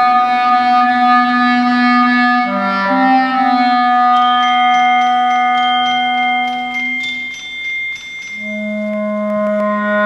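Clarinet playing slow, long-held notes in a chamber piece, moving to a new low note near the end. About four seconds in, soft high-pitched struck percussion notes join, each ringing on.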